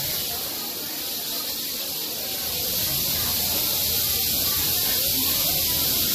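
Several rattlesnakes rattling at once: a steady, hissing buzz that grows a little louder about two and a half seconds in.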